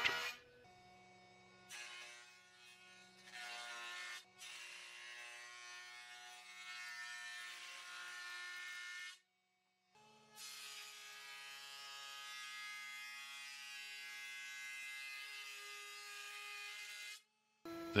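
Benchtop jointer running at a fairly low level, a steady motor whine with the hiss of the cutterhead as a rough-sawn walnut board is pushed across it. The sound stops suddenly a little past 9 s and starts again about a second later.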